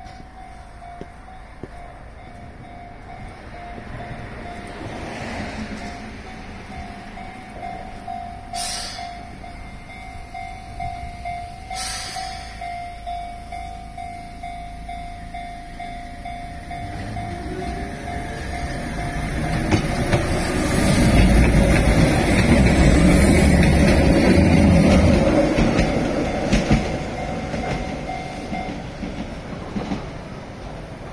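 Level-crossing warning bell ringing steadily while a Keihan 600 series two-car train pulls away from the platform. Its motor whine rises as it speeds up, and it passes close by with a loud rumble of wheels on rails. The bell stops near the end, as the crossing clears.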